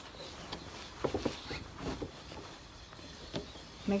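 Fitted cotton sheet rustling and brushing as it is pulled and worked over a dog bed, with a few soft knocks and a brief faint voice-like sound about a second in.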